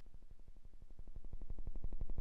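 Synthesis Technology E350 Morphing Terrarium wavetable oscillator running at a low pitch, heard as a fast even train of pulses at about fourteen a second. It grows steadily louder as its knob is turned with the axis control set to phase difference.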